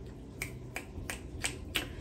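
A person snapping their fingers five times in a steady rhythm, about three snaps a second.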